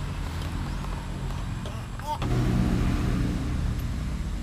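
A motor vehicle's engine running steadily in the background, growing louder for a second or so about two seconds in.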